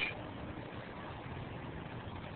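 Low, steady hum of street traffic with no distinct events.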